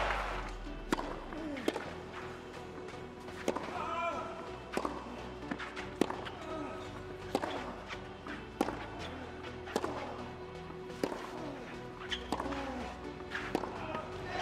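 A long tennis rally on a clay court: tennis balls struck by rackets and bouncing, sharp strikes coming at irregular intervals of about half a second to a second.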